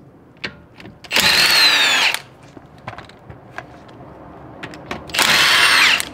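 Cordless impact wrench running on a car's wheel lug nuts in two bursts of about a second each, its pitch falling slightly during each burst. Light clicks come between the bursts.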